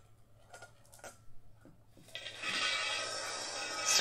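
Glass marbles swirled around inside stainless steel salad bowls. After a few faint clicks, a continuous rolling whir with the bowls' bright metallic ringing starts about two seconds in and holds steady.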